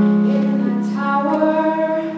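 Female singer performing a show tune into a microphone over musical accompaniment, with a long held low note and a higher sung line coming in about halfway.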